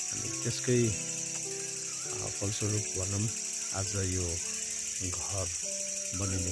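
A man talking in Nepali, with a steady, high-pitched, finely pulsing buzz behind him.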